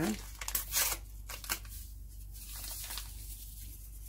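A paper sachet of vanillin sugar being torn open, with a cluster of sharp rips and crinkling in the first second, then a couple of small rustles.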